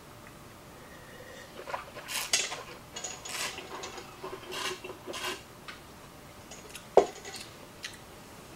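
Red wine being tasted: a run of short hissing slurps as air is drawn through a mouthful of wine and it is swished around, followed by a single sharp click near the end.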